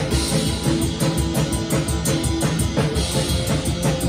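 A drum kit played at a fast, even beat, with bass drum, snare and ringing cymbals, along with a guitar-driven rock backing.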